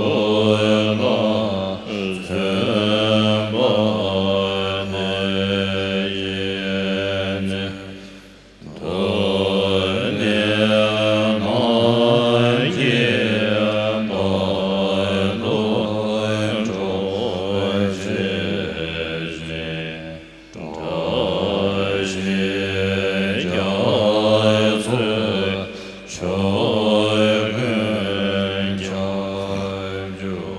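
Buddhist aspiration prayer chanted in a slow, sustained melody. It breaks off for short breaths between lines about eight and twenty seconds in.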